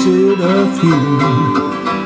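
A man singing a folk tune with a five-string zither-banjo accompaniment and a second, overdubbed banjo part picked underneath.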